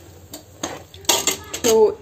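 A metal ladle scraping and knocking against the side of an aluminium pot while stirring a thick, crumbly flour-and-ghee mixture. There are a few faint scrapes at first, then a run of sharp, loud clinks and knocks starting about a second in.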